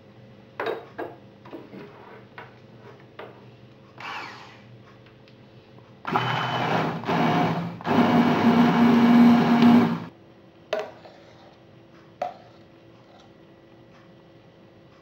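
Electric blender running in two bursts, about a second and a half and then about two seconds with a brief pause between, puréeing the creamed watercress soup. A few light knocks and clicks come before it.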